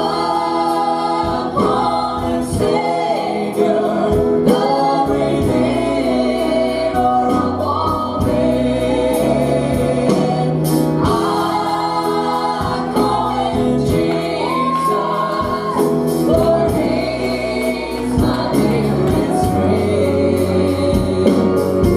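Two women singing a gospel song together into microphones, accompanied by piano and guitars.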